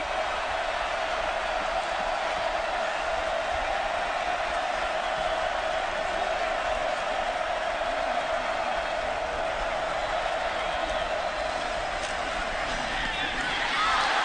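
Football stadium crowd noise: a steady roar of many voices during a third-down play, swelling slightly near the end.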